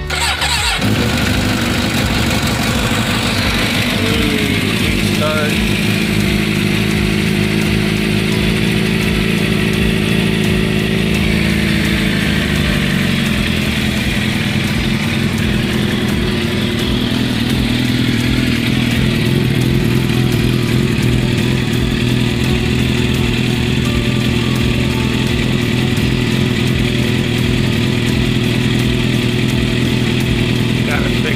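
A 2007 Suzuki GSX-R 750's inline-four engine starts right at the beginning and then idles steadily. About thirteen seconds in, the idle settles to a lower, steady speed.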